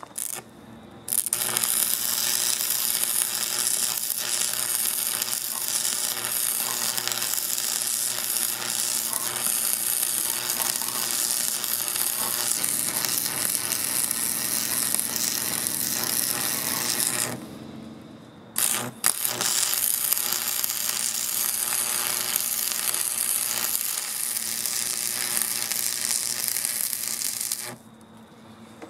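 Electric arc welding on the steel loader arm: a steady hissing buzz from the arc for about sixteen seconds. It stops briefly, a click follows, and a second weld run goes for about nine seconds more.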